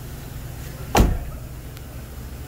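A car's driver's door, on a 2008 Toyota 4Runner, is swung shut once about a second in with a single solid thud, over a steady low background rumble.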